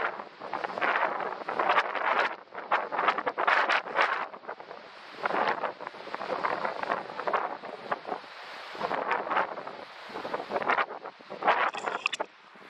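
Wind buffeting the microphone, a rushing noise that swells and drops in irregular gusts every second or so.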